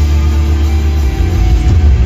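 Live punk rock band playing loud, electric guitar strummed over heavy bass.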